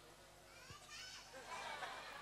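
Faint, high-pitched children's voices from the crowd during a pause in the amplified talk. They are a little louder in the second half.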